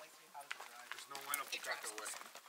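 Quiet, indistinct speech: several people talking in the background, no words clear.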